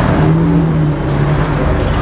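A remote fart-noise toy (The Pooter) playing one long fart sound at a steady pitch, over street noise.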